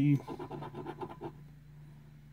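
A coin scratching the coating off a scratch-off lottery ticket: a quick run of short, uneven strokes in the first second or so, then stopping.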